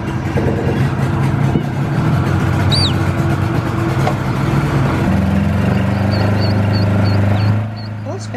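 A 25 hp outboard motor running loudly on a small boat, easing to a quieter, steadier note about seven and a half seconds in. Birds chirp above it from the reeds, once near three seconds and in a quick run of repeated notes near the end.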